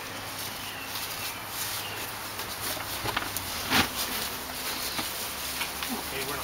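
Outdoor background hiss broken by a few short knocks, the loudest just before four seconds in.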